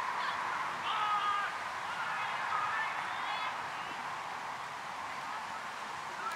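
Distant shouts and calls from players on a football pitch, short high-pitched cries rising above a steady outdoor background.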